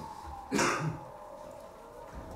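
A person clearing their throat once, a short rasping burst about half a second in.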